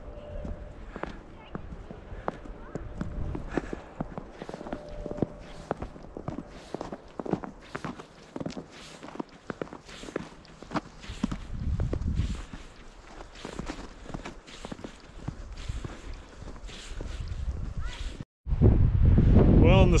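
Footsteps in fresh snow, an even walking pace of about two steps a second, which stop at a sudden cut near the end, where a man starts talking.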